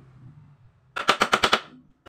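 A hammer tapping a wooden board, a quick run of about half a dozen sharp knocks in half a second, about a second in.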